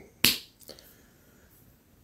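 A single sharp click about a quarter of a second in, then a much fainter tick about half a second later.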